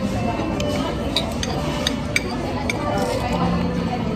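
Spoon and fork clinking against a plate while eating, about half a dozen light clinks in the first three seconds.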